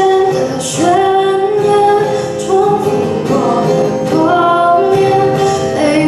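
A woman singing long held notes into a microphone, accompanying herself on an acoustic guitar.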